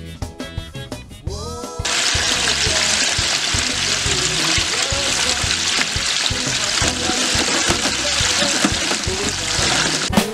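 Flour-dredged chicken deep-frying in 350-degree oil in a two-basket fryer: a loud, steady sizzle that begins suddenly about two seconds in. Background music with a beat runs underneath.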